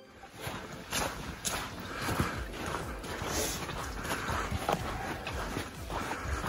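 Footsteps on a soft dirt and sand trail, irregular crunches about every half second to second, over a steady low rumble of wind on the microphone.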